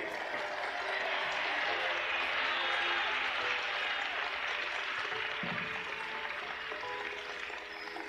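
Large crowd applauding and cheering, a dense even wash of clapping and voices, with a soft music bed underneath; it eases slightly near the end.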